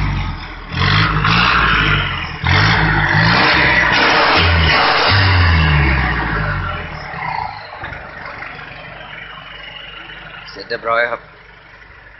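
Ten-wheel truck's diesel engine with a modified, loud exhaust, revved in several short bursts one after another, then let fall back and dying away toward idle.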